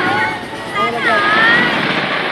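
A crowd of spectators shouting and cheering over the continuous rumble and crackle of a large fireworks display, with one long call about a second in that rises and then holds.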